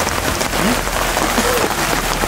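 Steady rain falling, a constant hiss with fine pattering of drops on leaves and ground.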